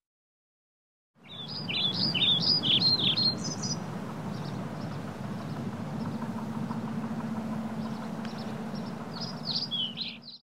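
About a second of silence, then birds chirping in quick, high twittering runs over a steady low hum. The chirping is busiest in the first few seconds and picks up again near the end, then the whole bed cuts off suddenly.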